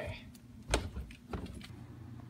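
Two dull thumps about half a second apart, the first the louder: footsteps as someone starts down a flight of stairs.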